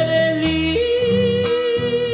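Male singer in a folk ballad holding a long high note that steps down to a lower sustained note under a second in, over strummed acoustic guitar.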